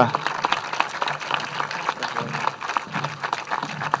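An audience of adults and children applauding: a dense run of many hands clapping that stops abruptly right at the end.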